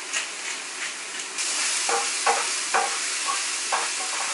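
Diced onion, red bell pepper and mushrooms sizzling in oil in a frying pan. The sizzle gets louder about a third of the way in, and a wooden spoon stirring them makes a few short scrapes in the second half.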